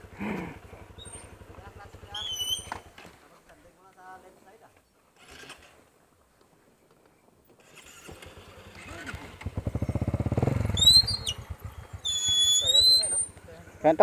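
Dirt bike engines running on a trail descent: a low, even engine pulse that fades out about three seconds in, then a motorcycle engine that builds from about eight seconds and is loudest near eleven seconds. A few short high squeals come near the end.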